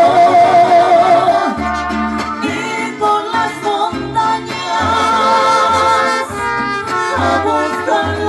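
Mariachi band playing live: trumpets and guitars over a pulsing bass line, with a woman singing.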